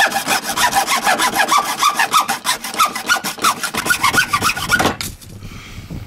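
Hand hacksaw cutting through a hollow horn in quick back-and-forth strokes. The sawing stops about five seconds in as the end of the horn is cut off.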